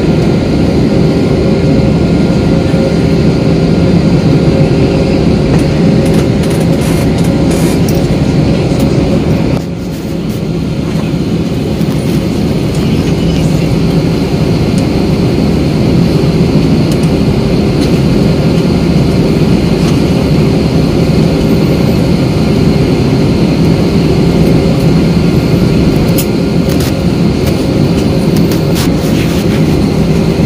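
Jet airliner's engines at takeoff thrust heard from inside the cabin, with the rumble of the wheels rolling on the runway. About ten seconds in the rumble drops away abruptly as the plane lifts off. A steady engine drone follows during the climb.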